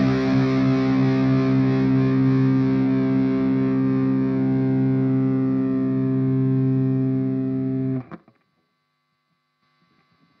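Distorted electric guitar on a high-output bridge humbucker through a high-gain amp model, one chord held and ringing steadily with no compressor in the chain, then cut off sharply about eight seconds in, leaving near silence.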